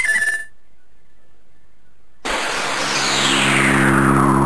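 A short electronic jingle ends on a held note. After a brief lull, electronic science-fiction theme music starts suddenly about two seconds in: a rushing noise with a falling whistle over a low synthesizer drone.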